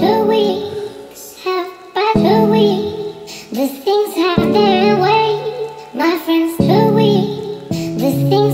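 A high solo singing voice carrying a wavering, vibrato-laden melody in phrases of one to two seconds, over sustained low accompaniment notes that change in steps.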